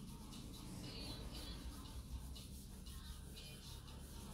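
Faint background music, with soft scratchy rubbing strokes of a cloth working bitumen wax onto the edge of an MDF box.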